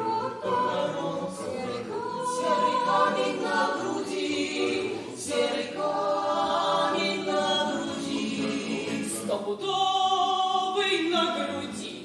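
Choir singing a slow song in long held notes, phrase after phrase, with short breaks between them.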